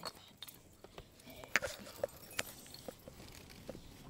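Scattered, irregular sharp clicks and taps, a few louder ones about one and a half and two and a half seconds in.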